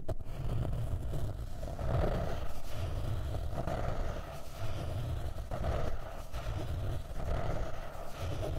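Long fingernails scratching back and forth across a notebook's hard paper-covered cover, close to the microphones, in a run of repeated strokes that swell and fade.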